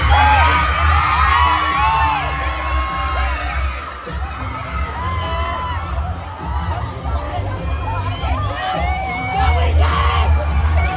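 A large crowd of fans screaming and shouting, many high voices calling out at once. It is loudest in the first couple of seconds, eases a little in the middle, and swells again near the end.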